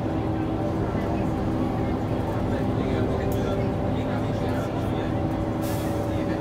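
Interior of an Ikarus 435 articulated bus under way: its diesel engine running at a steady drone with road noise, heard from inside the passenger cabin. A short rattle near the end.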